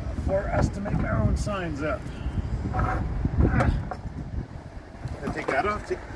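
Indistinct voice sounds in short broken bursts over a steady low background rumble.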